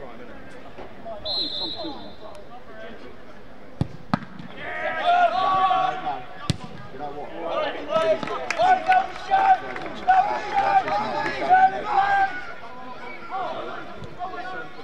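A short referee's whistle, then sharp thuds of a football being kicked, twice close together about four seconds in and once more a couple of seconds later, followed by players shouting on the pitch.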